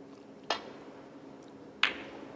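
Snooker cue tip striking the cue ball about half a second in. Just over a second later comes a louder, sharp click of the cue ball hitting an object ball.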